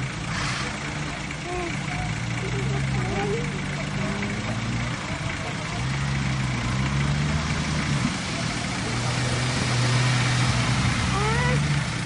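Engine of an off-road 4x4 running at low revs, its pitch rising and falling in several stretches as it crawls down a muddy slope. Faint voices of onlookers can be heard in the background.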